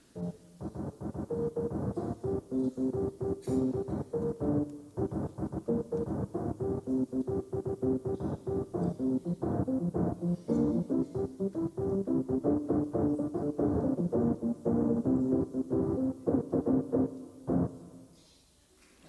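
A keyboard playing notes built from recordings of the brain's electrical response to each note. It plays a quick run of short pitched notes, mostly in a low-middle register, which starts just after the opening and stops just before the end.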